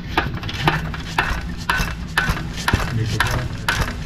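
Hydraulic transmission jack's pump being worked by foot, clacking about twice a second in a steady rhythm. The ram does not lift: the freshly rebuilt cylinder is air-bound and still low on fluid.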